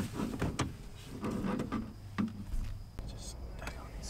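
Quiet, indistinct talk with a few small clicks and rustles from hands working loose speaker wires in a truck door panel, over a low steady hum.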